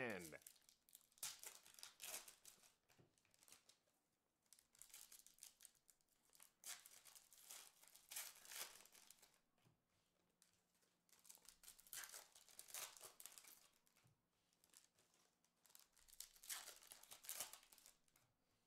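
Foil trading-card pack wrappers being torn open and crinkled, with the cards inside handled, in several faint bursts of rustling separated by short pauses.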